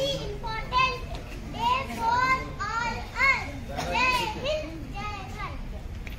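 A child's high voice speaking loudly in short phrases, each rising and falling in pitch.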